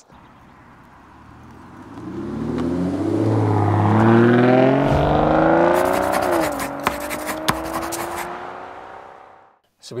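Car engine accelerating hard, its pitch climbing as it grows louder. A little past halfway the pitch drops suddenly, like a gear change, then climbs again slowly as the sound fades away, with a few sharp cracks around the change.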